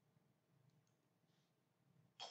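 Near silence: a pause in the recording, with only faint background hiss.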